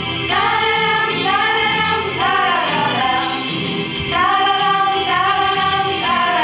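Female choir singing a song in short phrases of about a second each.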